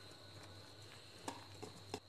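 Quiet room with a faint low hum and a few light clicks in the second half, from a spoon and a steel mixing bowl being handled as the batter is stirred and the bowl is picked up.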